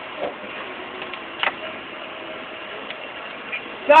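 Hydraulic floor jack being worked under a camper trailer to shift it sideways: a few scattered clicks and creaks from the jack and the trailer's frame, the clearest about a second and a half in.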